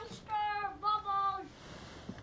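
A young child's high voice calling out in a drawn-out sing-song, two long held syllables, the second slightly lower.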